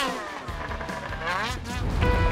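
Snowmobile engine revving, its pitch sweeping up and down as the throttle is worked, with background music under it.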